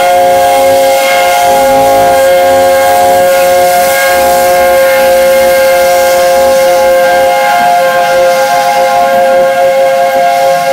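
Chime whistle of LNER A4 Pacific No. 60009 'Union of South Africa' held in one long, loud, unbroken chord as the locomotive pulls away, with steam hissing from the cylinders.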